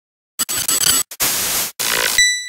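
After a brief silence, bursts of harsh static that cut in and out several times: a digital glitch sound effect for an animated logo intro.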